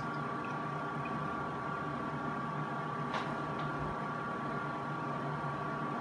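16-bay rack-mount RAID disk array (a Promise VTrak rebrand) running with its cooling fans settled down to idle speed after power-on: a steady whir with a thin high whine, quieter than at startup but plainly audible.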